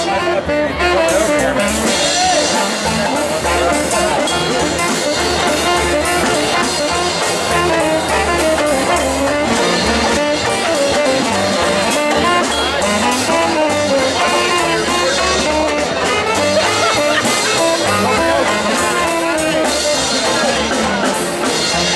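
A Mummers string band's saxophones playing a tune together in a live jam session, heard amid crowd chatter.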